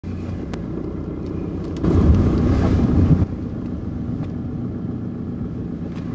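Inside the cabin of a Ford Mondeo 1.8 TDCi diesel on the move: a steady low engine hum and road rumble. About two seconds in, the sound turns louder and rougher for just over a second, then drops back suddenly.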